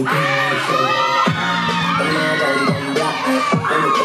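Dancehall music playing loud over a crowd cheering and shouting.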